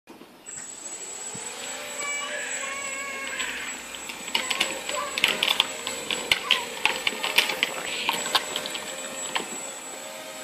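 Small mini-quadcopter's motors and propellers spinning up with a rising whine over the first couple of seconds, then running steadily as it flies. From about four seconds in, a run of irregular sharp clicks and taps sounds over it.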